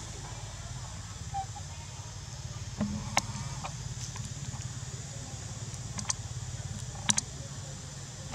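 Outdoor background ambience: a steady low hum under a steady high drone, broken by a few short sharp clicks, two of them close together near the end.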